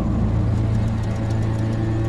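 Steady low hum of a large electrical generator running, an even drone with a row of overtones.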